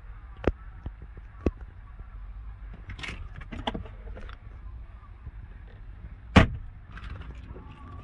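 Scattered light clicks of a car's interior trim being handled, then one loud thump about six and a half seconds in as the padded center console armrest lid is shut.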